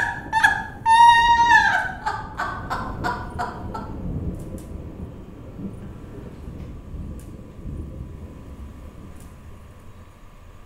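A woman's loud, high-pitched laughing cry, held for a moment and then breaking into shorter bursts that die away about four seconds in. After that there is only quiet room noise with a faint steady tone.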